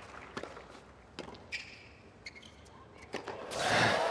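Tennis ball struck by racquets: a serve and a quick exchange of sharp hits about a second apart on a hard court, the last an overhead smash. Crowd applause and cheering swells up loudly near the end.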